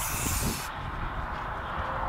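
Aerosol spray-paint can hissing as paint is sprayed onto a car body, cutting off about two-thirds of a second in, followed by a steady low background rumble.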